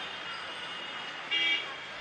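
Street traffic noise, with a short car horn toot about one and a half seconds in.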